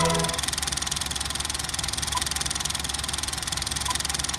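Movie film projector running: a rapid, even mechanical clatter that takes over as a music sting ends just after the start.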